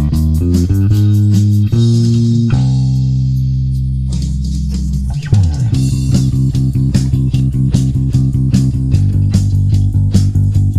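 Fingerstyle electric bass playing a pop ballad line over a drum track: a short syncopated phrase, then one long held note and a slide down the neck about five seconds in. It then settles into steady eighth notes on C, dropping to G near the end.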